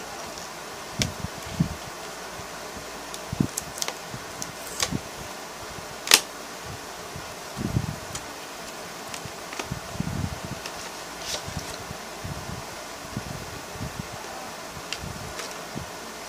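Scattered clicks, taps and soft knocks of a mascara's packaging being opened by hand, the sharpest click about six seconds in, over a steady background hiss.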